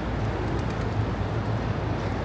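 Steady low rumble of city street traffic: engine and road noise blended into one even background, with no single vehicle standing out.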